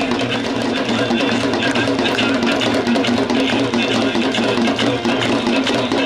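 Ganga aarti devotional music: a hand drum played in a busy steady rhythm with voices singing over it.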